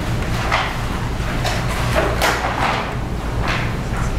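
Several short rustling and scraping sounds, like objects being handled and shifted near the microphone, over a steady low hum of courtroom room tone.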